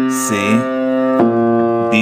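Piano chords played and held, a new chord struck a little over a second in and left to ring.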